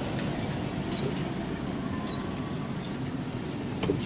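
Wooden-spoked wheels of a hand-pulled rickshaw rolling and rattling steadily over concrete, heard from the passenger seat, with a sharp knock just before the end.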